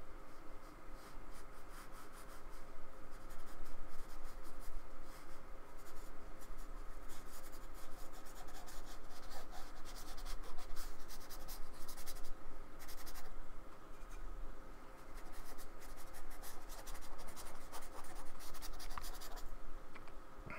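Bristles of a small paintbrush scratching and dabbing acrylic paint onto paper in runs of short, quick strokes, with a brief pause past the middle; the strokes stop just before the end.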